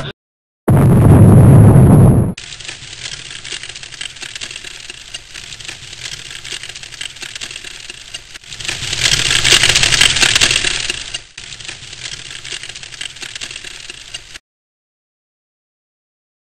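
A loud crash about a second in, then plastic LEGO bricks clattering and rattling continuously as a brick wall is knocked down and tumbles apart, swelling louder in the middle and cutting off suddenly near the end.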